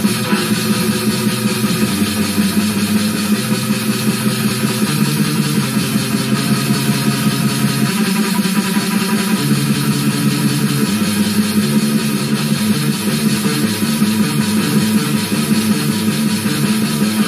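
Electric guitar on an 18-tone equal-tempered microtonal neck, played through a small amp in fast, distorted death/thrash riffs with the low notes shifting in steps, over a fast black metal drum loop.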